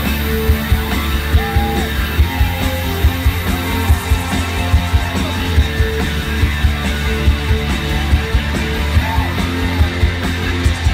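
Live rock band playing: electric guitar, bass and a drum kit with a steady beat, amplified through a PA.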